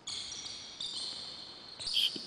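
Sneakers squeaking on a hardwood gym floor as the players pivot and shuffle, a sustained high squeal that changes pitch once partway through.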